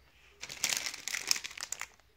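Clear plastic packaging crinkling as a packaged three-pack of plastic fly swatters is handled, starting about half a second in and stopping just before the end.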